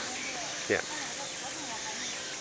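Steady high hiss of open-air ambience on a moving chairlift, with faint voices beneath it and one brief falling sound about three-quarters of a second in.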